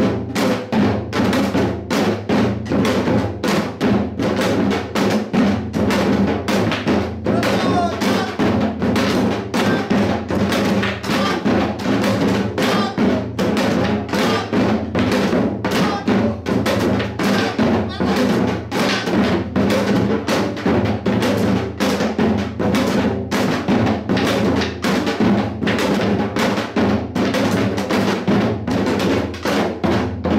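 Korean janggu (pungmul hourglass drum) played in the fast hwimori rhythm: a quick, steady stream of stick strokes on the high head mixed with deeper strokes on the low head, kept up evenly throughout.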